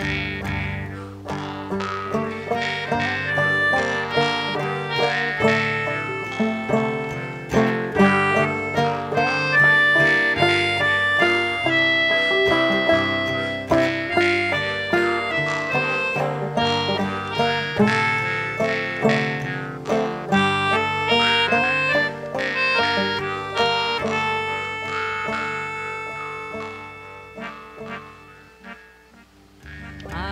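Instrumental folk break: a squeezebox holding sustained melody notes over plucked-string accompaniment, dying away over the last few seconds.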